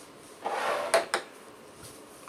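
A short rustle or slide, then two sharp knocks a fifth of a second apart: a sauce bottle being set down on a wooden tabletop.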